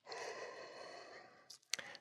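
A man's soft exhale close to the microphone, fading away over about a second and a half, then two small clicks just before speech resumes.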